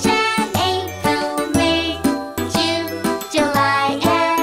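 Children's song music with a bright, jingly accompaniment and a regular beat, with the months of the year sung in turn.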